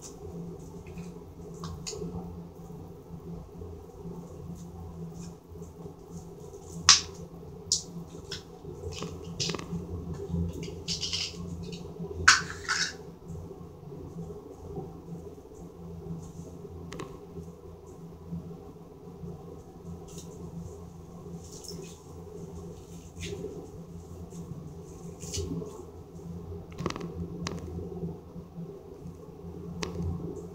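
Hands squeezing and kneading a clear glitter slime packed with foam beads (floam), giving scattered soft crackles and pops, two of them louder, over a steady low hum.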